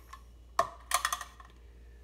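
Light clicks and taps from handling a blender container and its clear plastic lid: one click about half a second in, then a quick cluster of clicks around the middle.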